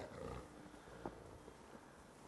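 A wolf growling low and faintly, fading out within the first half second, followed by a single sharp tick about a second in.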